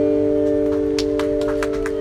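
Acoustic guitar chord ringing out and slowly fading just after the harmonica stops at the end of a song, with a few sharp clicks scattered through the second half.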